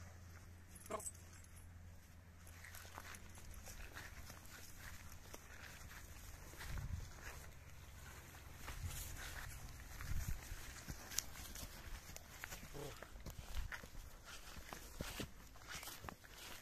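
A heavy draft mare walking across grass: faint, scattered footfalls and a few short animal sounds over a steady low rumble of wind on the microphone.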